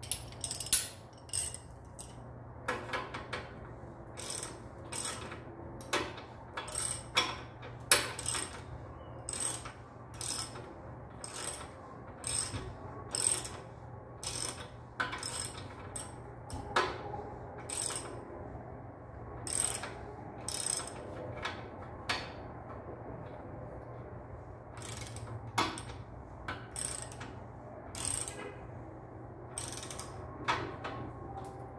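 Hand ratchet wrench clicking in short, irregular strokes, about one to two a second, as it tightens the cap on a mountain bike's rear shock. There is a brief lull about three-quarters of the way through.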